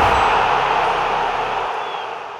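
Logo-sting sound effect: a loud hiss like TV static that swells and then slowly fades as the logo settles, with a faint high ringing tone near the end.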